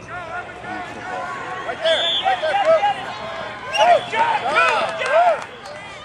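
Indistinct shouting from several people at once: many short overlapping calls, loudest from about two seconds in until near the end.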